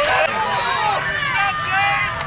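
Crowd of many voices shouting and calling out at once, overlapping without any one clear speaker.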